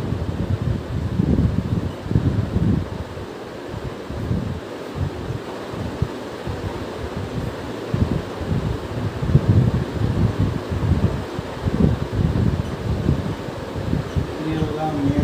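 Low, uneven rumble of moving air buffeting the microphone, rising and falling in gusts, with a steady fan-like hum beneath it.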